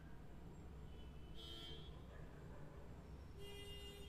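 Near silence: a faint steady low hum of recording noise, with faint brief high-pitched tones about every two seconds.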